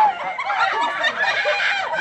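Several people laughing and shrieking over one another, the high, broken squeals of a group startled by a scare.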